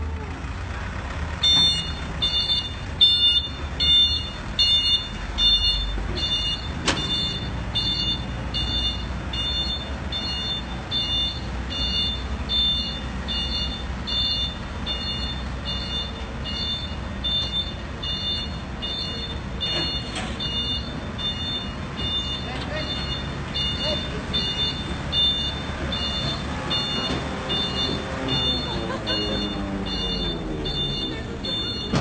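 A flatbed tow truck's warning beeper sounds steadily, a high beep about twice a second, over the low rumble of the truck's engine running.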